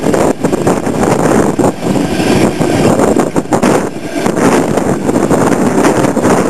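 Double-deck electric passenger train running past, a loud steady rumble of wheels on rail, mixed with gusty wind buffeting the microphone.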